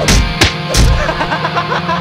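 Loud channel-intro music sting: three heavy hits in the first second, then a sustained low bass note under wavering, bending higher notes.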